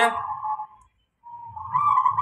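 Zebra dove (perkutut) cooing: a drawn-out, wavering coo that breaks off about a second in and starts again moments later.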